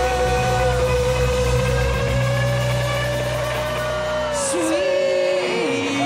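Live rock band holding a loud sustained chord with singing and yells over it. The bass stops about four seconds in, and the remaining held notes slide downward near the end as the song winds down.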